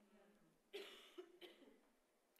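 Near silence in a pause of the talk, broken by one faint cough about three-quarters of a second in, trailing off briefly.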